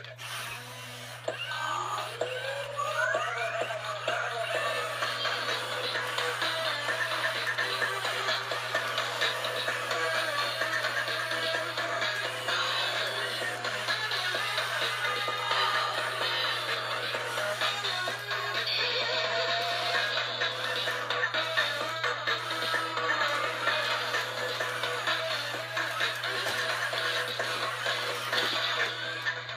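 Robosapien V2 toy robot playing its built-in dance music through its small speaker while it dances, with a rising electronic glide about two to four seconds in.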